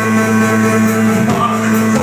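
Live rock band playing loud: a sustained keyboard note holds steady under drums and guitar, with a shouted vocal line coming in a little after a second in.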